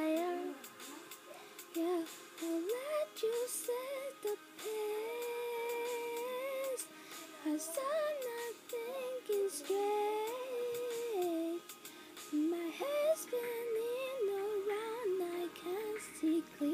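A young woman singing unaccompanied. A single voice holds long notes and slides between them, with no instrumental backing.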